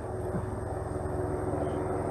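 Steady low background rumble with a faint hum, slowly getting a little louder.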